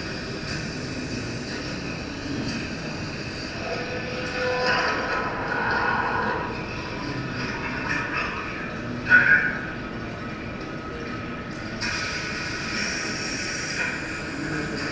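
Steady machine running noise with several whining tones, from the soundtrack of a toilet demonstration video. There is a short, sharp squeal about nine seconds in, and near the end the noise becomes brighter and louder.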